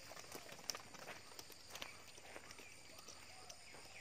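Faint, scattered light clicks and rustles of a person moving on dry leaves and handling a fishing rod as a hooked catfish is pulled from the water, with faint calls in the background.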